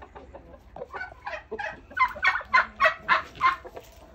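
Poultry calling, chickens and turkeys together: a run of short, repeated calls, about three a second, starting about a second in and loudest in the second half.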